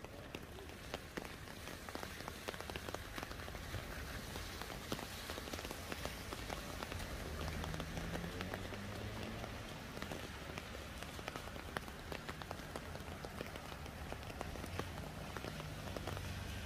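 Steady rain falling on wet pavement, a dense patter of drops over an even hiss, with a low traffic rumble underneath that swells a little around the middle.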